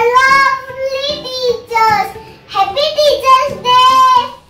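A young girl singing a song in short phrases with long held notes.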